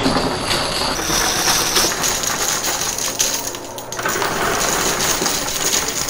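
Casino chips and quarters clattering across a coin pusher's playfield as a tall chip tower collapses onto it: a dense, continuous clatter of many small hard impacts, easing briefly about three and a half seconds in.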